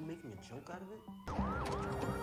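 Police car siren in a TV episode's soundtrack, starting just over a second in, its pitch rising and falling over and over.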